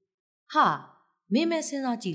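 A woman's short sigh about half a second in, its pitch falling steeply, followed by her Burmese narration resuming.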